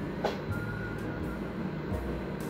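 Steady low room hum, with a faint click about a quarter second in and a faint thin whistling tone lasting about a second.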